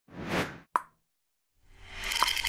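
Intro-animation sound effects: a short whoosh, then a single sharp plop. After a moment of silence, another effect swells up near the end.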